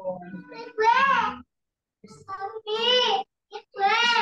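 A person's voice speaking in short phrases with a pause in between, heard over a video-call connection.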